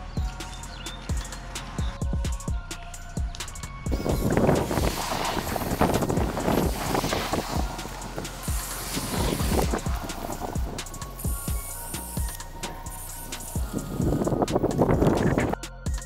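Background music with a steady beat. From about four seconds in, the hiss of an Ortho hose-end sprayer spraying fertilizer solution over a tree comes and goes in spells, and it stops just before the end.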